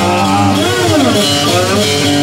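Amplified cigar box guitar played with a slide, its notes gliding up and back down in a bluesy line.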